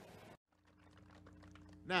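Faint room ambience cuts off sharply, then a quick, irregular series of faint clicks plays over a low steady hum. A man's voice comes in near the end.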